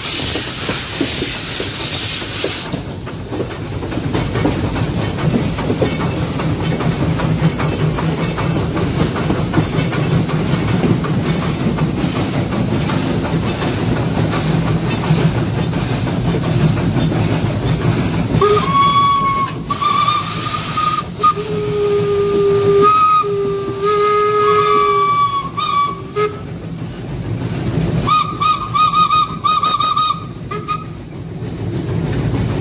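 Steam locomotive: a loud burst of steam hiss for the first few seconds, then the engine and train running with a steady low rumble. From about 18 seconds in the steam whistle sounds in several wavering blasts, with a lower second tone joining midway, and it blows again near the end.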